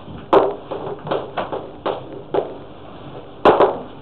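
Chalk tapping and scratching on a blackboard as equations are written: a string of about eight sharp taps, the loudest about a third of a second in and a close pair near the end.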